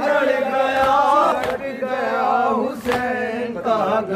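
Men chanting a noha, a Shia lament for Hussain, in long sung lines with a chorus joining, while a sharp hand strike lands about every one and a half seconds to keep time.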